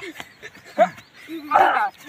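A couple of short, excited shouts from young male voices, with quieter gaps between them.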